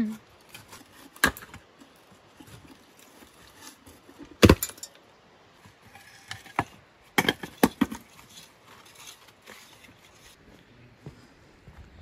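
Broken hollow clay bricks knocking and clattering as they are handled and dropped onto brick rubble: a few separate sharp knocks, the loudest about four and a half seconds in, then a quick run of several knocks between seven and eight seconds.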